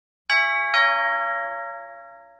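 Two-note chime, struck twice about half a second apart, each note ringing and slowly fading away.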